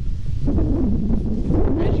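Wind buffeting the microphone outdoors: a loud, low, rumbling noise.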